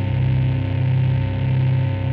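A sustained, low, distorted electric-guitar drone ringing out through an amplifier at the end of a song, swelling and dipping steadily about one and a half times a second.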